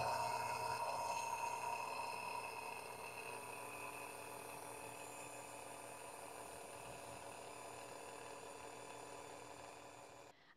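Vintage Sunbeam Mixmaster stand mixer running, its motor humming steadily as the twin beaters churn cake batter in a glass bowl. The hum slowly grows fainter and fades out near the end.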